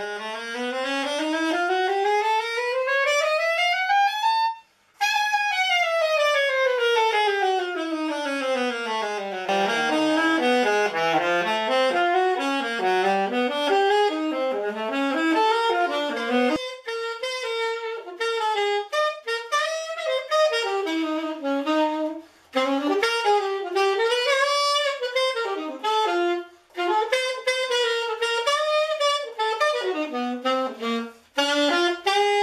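Armstrong 3006 alto saxophone played solo. It runs steadily up its range for about four seconds, briefly breaks, and runs back down. Then come quick zigzagging figures and a melodic line broken by short breathing pauses.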